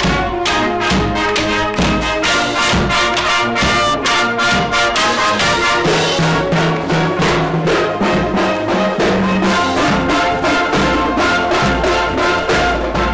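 A marching band playing live at close range: trumpets and other brass with clarinets over a drumline's steady marching beat. The band is so loud this close that the recording overloads and distorts.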